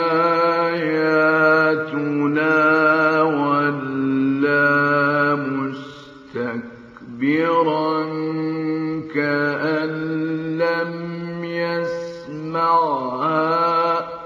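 A male voice reciting the Quran in the melodic mujawwad style, holding long ornamented notes. About six seconds in there is a short breath pause, then a second long phrase that fades out near the end.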